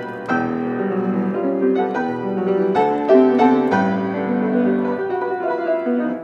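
Grand piano played solo: chords and melody notes struck and held, changing every second or so, with firmer strikes about three seconds in.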